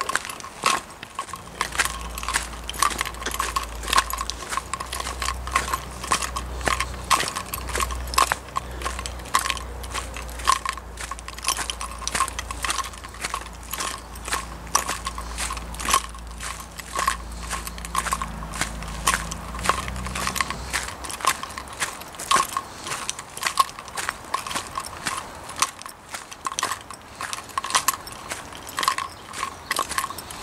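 Footsteps crunching on a leaf-strewn dirt path at a steady walking pace. A low steady rumble sits beneath them for most of the first two-thirds and stops about twenty seconds in.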